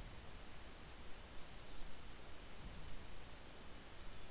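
Faint computer keyboard keystrokes, a few scattered clicks, over a steady low hiss.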